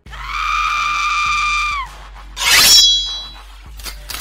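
Intro sound effects: a high, steady scream-like tone held for nearly two seconds, then cut off. About half a second later comes a loud crash with shattering glass and a high ringing that fades within a second.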